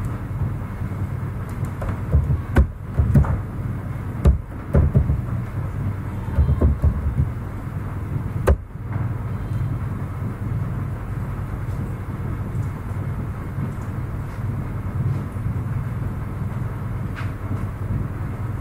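Computer keyboard and mouse clicks, a scatter of short taps between about two and nine seconds in, over a steady low hum of room noise.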